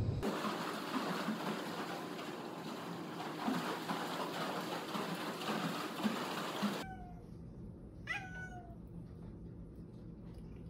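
Indoor swimming pool water noise: a steady wash of splashing that cuts off suddenly at about seven seconds. Then a domestic cat meows: a short faint meow, then about a second later one loud meow that rises sharply in pitch and falls away.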